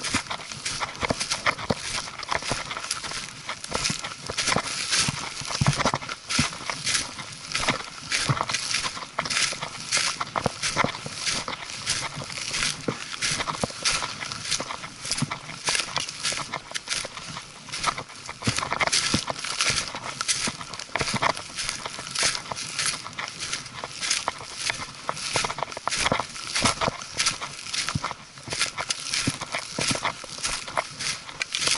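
Footsteps crunching through dry leaf litter on a forest path, with hiking pole tips striking the ground, in a steady walking rhythm.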